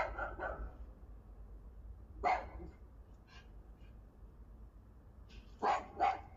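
Husky-malamute dog giving short barks: a quick run of two or three at the start, one a couple of seconds in, a faint one after it and another near the end.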